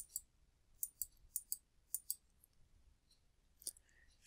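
Faint computer mouse clicks while a document is scrolled: about ten short, sharp ticks spread through the few seconds, several in quick pairs.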